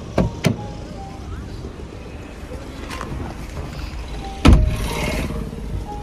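Car door clicking open, then slammed shut with a heavy thump about four and a half seconds in, over a steady low hum.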